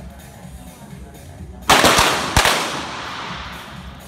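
.22 sport pistols firing on the range: three sharp shots in quick succession about halfway through, each ringing out in the range's echo. Electronic music with a steady beat plays underneath.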